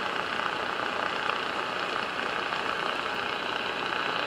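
Steady receiver hiss from a Lescom LC995V2 CB radio's speaker, tuned to channel 38 on lower sideband: even band noise with no station coming through on a dead band.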